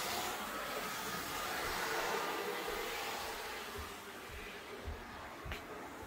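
HO-scale model train running on the layout track: a steady whirring and rolling that slowly grows fainter, with a couple of faint knocks near the end.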